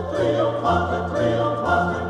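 A small choir singing a Baroque sacred oratorio in several parts over a low instrumental bass line, the chords changing about every half second.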